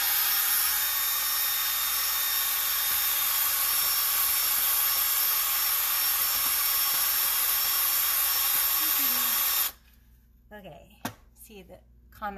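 Cordless drill with a paddle mixer running at steady high speed, mixing a bucket of liquid ceramic glaze, then cutting off abruptly a couple of seconds before the end.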